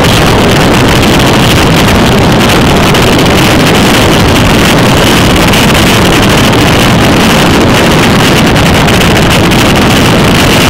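Wind buffeting the microphone of a bicycle-mounted camera while riding at speed: a loud, steady rush of noise.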